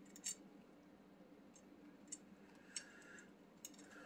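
Blue-and-gold macaw eating from a stainless steel bowl: a few sharp, scattered clicks of its beak on the food and bowl, otherwise near silence with a faint room hum.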